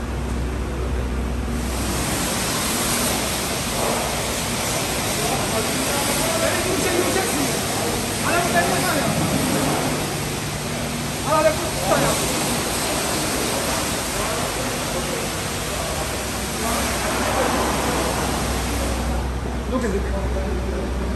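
Steady rushing hiss of car-wash equipment at work, starting about two seconds in and stopping shortly before the end, with indistinct voices in the background around the middle.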